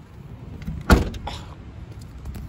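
Rear liftgate of a 2003 Pontiac Vibe shut with a single sharp thud about a second in.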